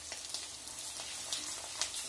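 Hot oil sizzling in a clay pot as ground spices and green chillies fry, with scattered crackles and pops over a steady hiss.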